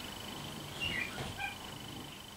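A few faint, short bird chirps about a second in, over a faint steady high-pitched whine.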